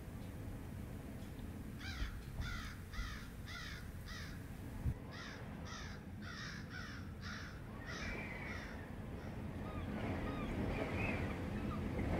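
A bird giving short, harsh calls in quick succession, about two to three a second, in two runs starting about two seconds in, with fainter calls near the end. Low rumbling background noise runs underneath, with a single knock about five seconds in.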